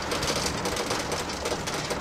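Motorhome driving along a block-paved road, heard from inside the cab: a steady mix of engine and tyre noise.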